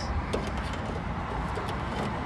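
Steady low background rumble of outdoor ambience, with a few faint light clicks.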